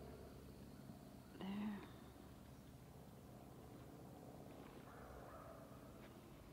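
Near silence: quiet outdoor ambience, broken once about a second and a half in by a short pitched call that rises at its start and lasts under half a second.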